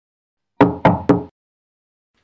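Three quick knocks on a door, about a quarter second apart.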